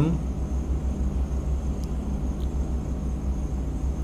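Steady low rumble with a soft hiss of background noise, with two faint ticks around the middle.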